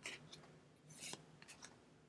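A few faint, brief swishes of Pokémon trading cards sliding against each other as a handheld stack is flipped through card by card.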